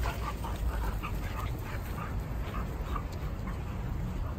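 Two pit bull-type dogs making short whining and grunting play noises as they wrestle and tug, several a second at first and scattered after, over a steady low rumble.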